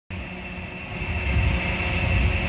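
Vertical wind tunnel's large fans running: a steady rushing noise with a thin high whine and a low uneven rumble, growing a little louder about a second in.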